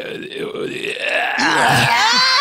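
A person's drawn-out, croaky vocal noise, loud and strained rather than spoken words, with the pitch sliding near the end.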